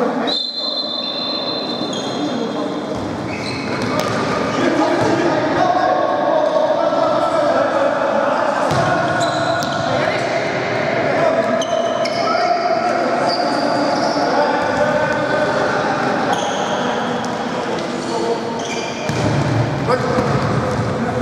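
Indoor futsal play in a large, echoing sports hall: players' voices calling out over one another, with the ball being kicked and bouncing on the court floor.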